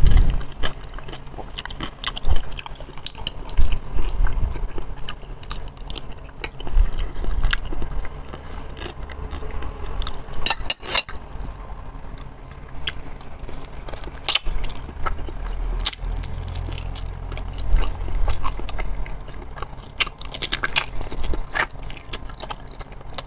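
Close-miked chewing and mouth sounds of a man eating roast chicken, with many small wet clicks and smacks throughout as he pulls the meat apart with his fingers.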